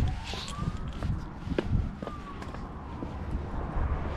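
A faint siren wailing, slowly rising and then falling in pitch, over a low rumble, with a few sharp clicks.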